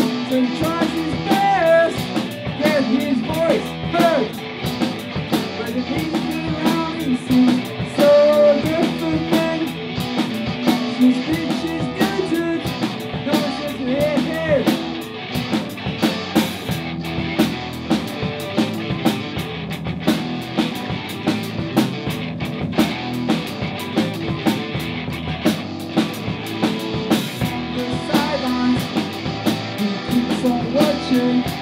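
A rock band playing: two electric guitars, an electric bass and a drum kit, with drum strikes running through the whole passage.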